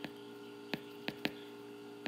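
Steady electrical hum with three light clicks about a second in, from a stylus tapping on a tablet screen while handwriting.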